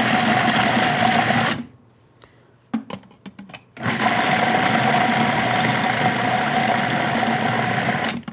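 Countertop food processor pulsed while blending chopped chocolate with hot cream into ganache: its motor runs with a steady hum for about a second and a half, stops, a few light clicks sound in the pause, then it runs again for about four seconds.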